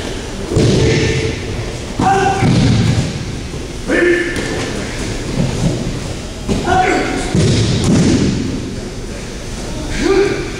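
Aikido throws and breakfalls onto a padded mat: a series of heavy thuds a couple of seconds apart, each joined by short sharp shouts, echoing in a large hall.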